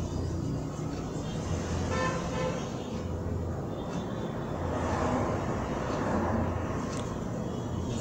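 Steady road-traffic noise with a short horn-like toot about two seconds in, over the soft cutting of scissors going through fabric.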